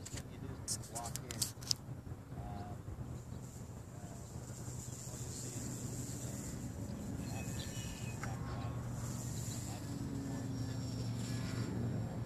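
Distant radio-controlled model airplane's motor and propeller droning steadily, growing gradually louder as the plane comes closer. A few sharp clicks come in the first two seconds.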